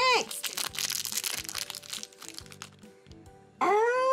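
A foil blind-bag wrapper being crinkled and crumpled in the hands, a dense crackling for about a second and a half that then thins to a few light clicks. Background music plays underneath, and a high-pitched voiced tone sounds at the very start and again near the end.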